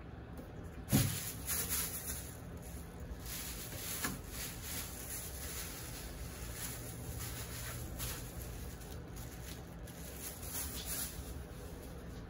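Aerosol spray paint can hissing in repeated short bursts, with a single sharp knock about a second in.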